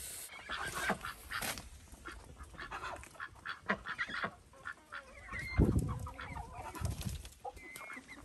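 A flock of domestic ducks calling with short, irregular quacks, with chickens clucking as they arrive near the end. There is a loud thump a little past halfway.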